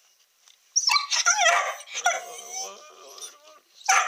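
A dog making a long, wavering whining vocalisation that starts suddenly about a second in, trails off, then starts again near the end: an insistent demand for attention.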